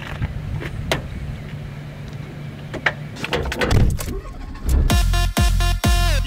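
A small Fiat Cinquecento hatchback idles with a low, steady hum, with a few sharp clicks from the car. About five seconds in, an electronic dance track with a heavy bass beat and synth chords comes in loud.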